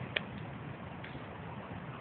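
Faint steady background hiss with one short click about a fifth of a second in.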